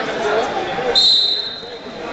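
Wrestling referee's whistle: one high, steady blast starting about halfway through and lasting about a second, signalling the restart from the referee's position. Voices are heard before it.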